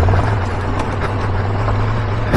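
Triumph Tiger 1200 Rally Pro's three-cylinder engine running steadily at low speed as the motorcycle rides along a gravel track.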